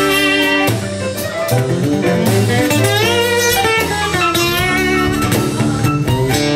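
Live blues band playing an instrumental section: guitar with bending, wavering notes over keyboards and drums.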